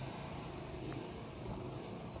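Low, steady background noise, with one faint click about a second in.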